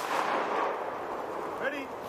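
The echo of a rifle-salute volley from M4 carbines fading away over about a second and a half. A short shouted firing command follows near the end.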